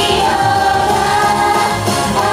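Live J-pop song: a group of young women singing in unison into microphones over pop backing music, amplified through stage PA speakers.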